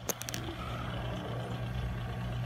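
A few short handling clicks and rubs of a finger on the camera lens in the first half second, then a steady low hum with faint hiss.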